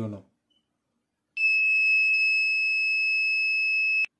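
Small round piezo buzzer on an Arduino alcohol-detector breadboard sounding one steady, high-pitched tone, starting about a second and a half in and stopping abruptly at the end. It is the alarm going off because the MQ3 alcohol sensor has picked up alcohol vapour from a marker pen held to it.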